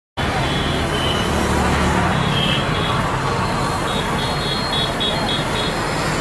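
Street traffic noise with a motor vehicle's engine humming low in the first two seconds. In the second half there is a run of about eight short, evenly spaced high pips, about four a second.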